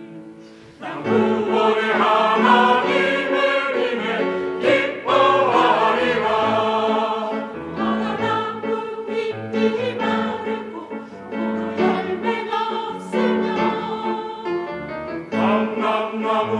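Mixed church choir singing a Korean anthem with piano accompaniment. After a short lull the choir comes back in about a second in and sings on steadily.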